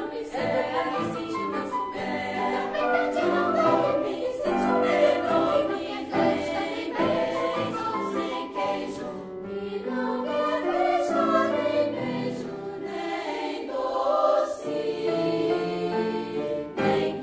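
Children's choir singing in Portuguese, accompanied by a small chamber ensemble of woodwinds, horn, guitar and piano.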